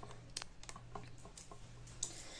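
Faint, irregular clicks and taps from fingers handling a camera phone close to its microphone.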